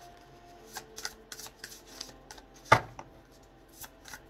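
A deck of tarot cards being shuffled by hand: a run of soft card flicks and slaps, with one sharp knock about two-thirds of the way through.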